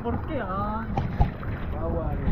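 A person's voice over a steady rush of wind and sea water on the microphone, with two short knocks about a second in.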